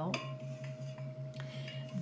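A few light clicks and clinks of kitchen containers being handled on a counter, over a steady low hum with a faint held tone.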